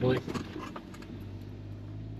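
Steady low hum of a vehicle's engine and road noise heard inside the cab while driving, with a low drone coming in about a second in.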